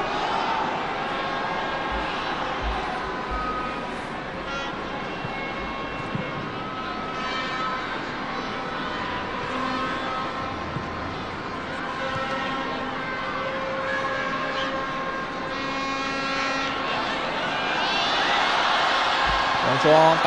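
Football stadium crowd: a steady hubbub of spectators with scattered shouts and calls. The crowd swells over the last couple of seconds as the attack nears the goal.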